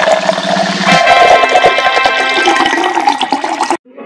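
Loud full orchestral music: a big held chord enters about a second in and cuts off abruptly just before the end.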